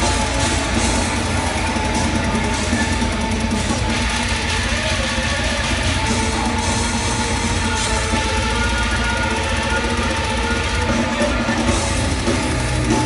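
Live heavy metal band playing: electric guitar and a drum kit with cymbals, loud and unbroken.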